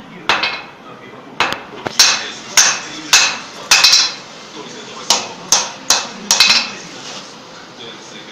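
Hand hammer striking red-hot steel on an anvil: about a dozen sharp blows with a short metallic ring, roughly two a second and some in quick pairs, stopping about six and a half seconds in. It is the forging of a decorative ball end on a steel bar.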